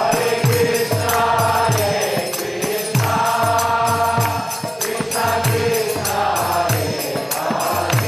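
Group devotional chanting (kirtan): many voices singing a mantra in long phrases, over a drum beating a steady rhythm and hand cymbals clashing.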